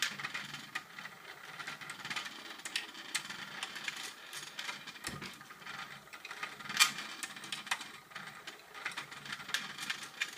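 Hexbug Nano V2 vibration-motor toy running across a plastic track and arena: a continuous rattling buzz made of many quick small clicks as it skitters over and bumps the plastic, with one sharper click about seven seconds in.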